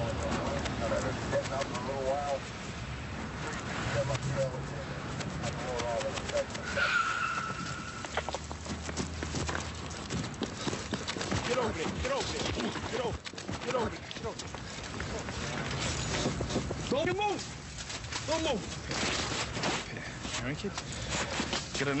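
Footsteps hurrying on pavement with clothing and gear rustling, as officers close in on foot. The footfalls come thick from about eight seconds in, with faint, wordless voices under them.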